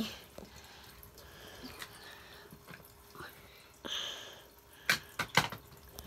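Tabletop toy basketball game in play: a small plastic ball is launched at the hoop, with a quick run of sharp plastic clicks and knocks about five seconds in as it hits the rim and board and misses.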